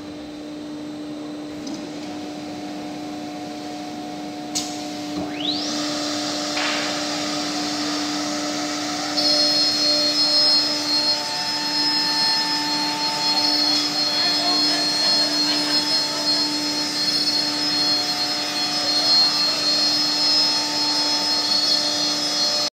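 Holztek CNC nesting router and its dust extraction running steadily with a hum. A whine rises about five seconds in, and from about nine seconds on the machine is louder, with a steady high-pitched whine as it cuts.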